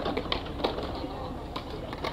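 Outdoor ambience: a pigeon cooing among faint scattered clicks and distant voices.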